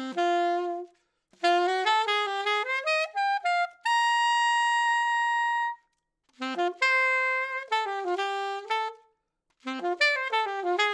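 Alto saxophone played on a SYOS Steady mouthpiece: phrases of quick running notes, separated by short breaths, climbing to a high note held for about two seconds midway. The tone is bright but more mellow and less in your face.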